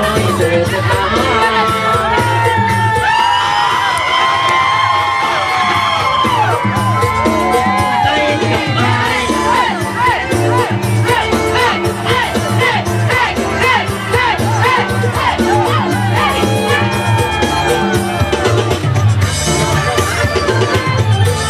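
Loud dance music with a steady beat played over a PA loudspeaker, with a crowd cheering and whooping along.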